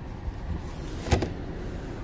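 A comic book's paper pages being handled, with one brief rustle about a second in, over a low steady rumble inside a car.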